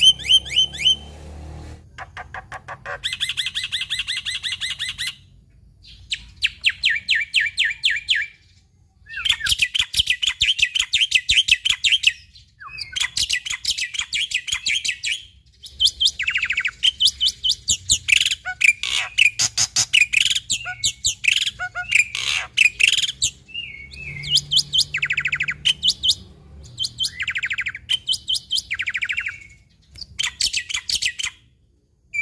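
Black-winged myna singing in loud phrases of fast, chattering repeated notes. Each phrase lasts a couple of seconds with short pauses between, and a longer, busier stretch comes in the middle.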